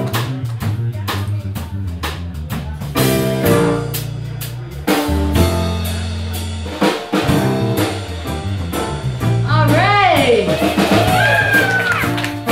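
Live blues band playing an instrumental passage: acoustic-electric guitar, electric bass and a drum kit with cymbals keep a steady beat, with long low bass notes in the middle. Near the end a harmonica comes in with notes that bend up and down.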